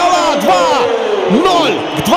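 A football commentator's drawn-out shout celebrating a goal, one long held call that slowly falls in pitch over about a second and a half, over a stadium crowd cheering with scattered whoops.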